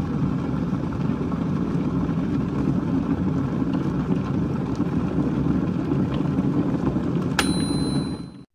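A steady low rumbling noise. About seven seconds in, a click is followed by a high, steady electronic tone.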